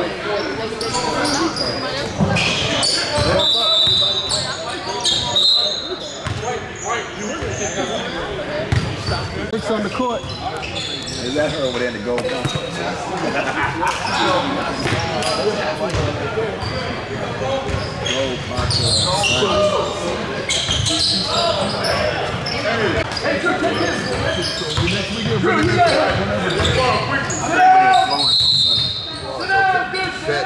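Basketballs bouncing on a hardwood gym floor amid the chatter of players and spectators, echoing in a large hall, with a few short high squeaks or whistle blasts.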